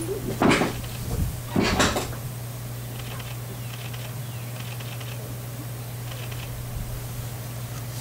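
Steady low electrical hum, with two short breaths from a man about half a second and two seconds in.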